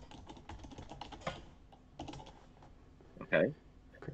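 Computer keyboard typing: quick runs of keystrokes that stop a little after a second in, with a few more keystrokes about halfway through.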